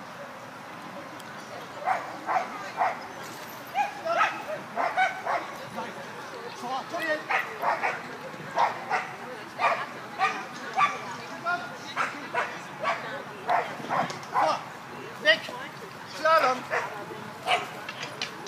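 Border collie barking in short, sharp barks over and over, about two a second, as it runs an agility course; the barking starts about two seconds in.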